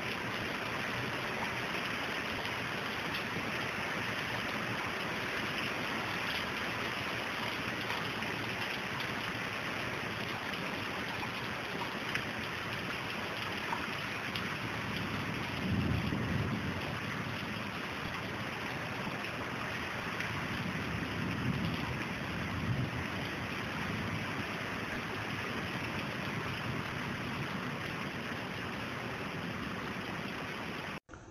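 Heavy rain pouring down in a steady, dense hiss, with water running across paving. A low rumble swells up about halfway through and again a few seconds later.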